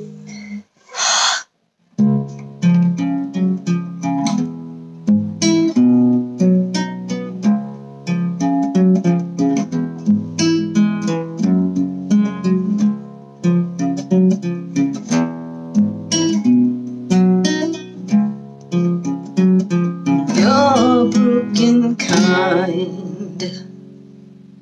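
Acoustic guitar played as an instrumental passage, a steady run of plucked notes and chords. About twenty seconds in a wordless, wavering sung line joins briefly, and the guitar fades near the end.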